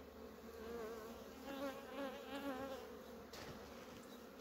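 Honeybees buzzing around an open hive, individual bees flying close by with a faint, wavering hum.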